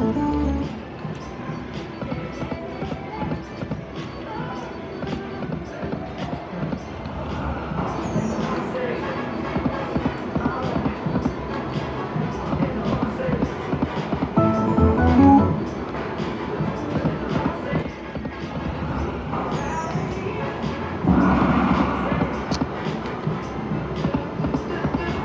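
Video slot machine playing its electronic music and spin sounds, with louder swells every several seconds as spins play out. Casino crowd chatter runs underneath.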